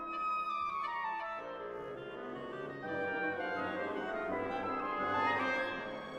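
Symphony orchestra playing a 1949 concert overture. A falling run of high notes opens it; lower instruments join about a second in, and the texture fills out.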